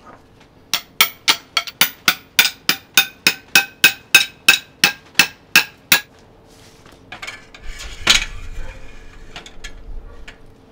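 A hammer striking a long metal rod being driven into a wooden orchid mount: a steady run of about seventeen ringing metal strikes, roughly three a second, that stops about six seconds in. Then rustling and a single knock as the mount is handled.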